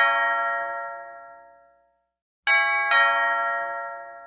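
A two-note bell chime, a ding-dong: the second note of one chime rings out at the start, then a fresh pair of strokes about half a second apart sounds about two and a half seconds in, each fading away over a second or so.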